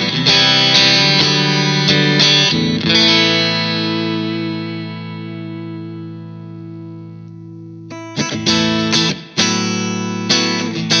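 Vola Vasti KJM J2 semi-hollow electric guitar played clean with its humbuckers tapped to single-coil, starting on the middle pickup. A few strummed chords come first, then a chord is left ringing and fades for about five seconds. New chords are picked again from about eight seconds in.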